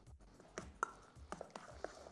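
Faint, irregular clicks and scrapes of a utensil stirring beaten eggs and corn kernels in a stainless steel bowl.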